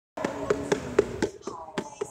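A run of sharp taps, about four a second, that grows fainter after about a second and a half.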